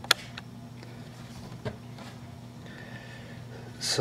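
Quiet workshop room tone with a steady low electrical hum. There is one sharp click just after the start and a fainter knock about halfway through, as the coil-spring strut assembly is handled on the workbench.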